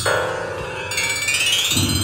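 Electronic music built in MetaSynth from a sample of struck metal pipes: metallic pitched tones that slide in pitch, with a low rumble coming in near the end.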